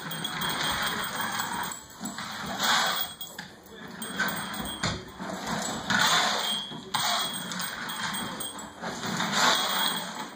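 Plastic toy skate wheels rolling and rattling over a hardwood floor, in surges that rise and fall every few seconds as the child is moved along.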